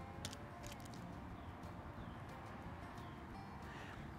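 Faint ambience with a few soft clicks of a metal spoon packing cream cheese into a parboiled jalapeño, and a few faint bird chirps.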